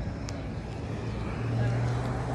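Low steady hum of a nearby motor vehicle's engine in street traffic, growing a little louder past halfway through.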